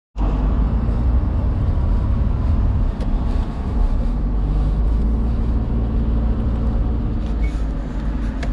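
Car engine and road noise heard from inside the cabin of a small car while driving: a steady low rumble.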